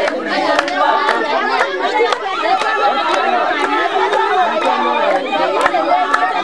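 A group of women's voices singing and calling together at a dance, over a sharp beat that keeps time about twice a second.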